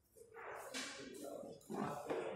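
Indistinct voices of people talking, starting about a quarter second in, with no words clear.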